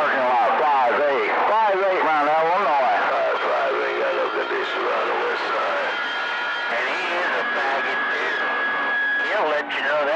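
CB radio receiving distant skip on channel 28: garbled, unintelligible voices for the first few seconds, then static with faint voices under steady whistling tones before voices come through again near the end.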